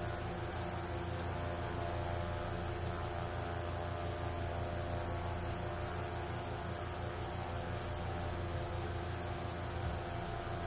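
Crickets chorusing: a steady high unbroken trill, with a second, lower insect chirp pulsing regularly about three times a second and a faint low hum underneath.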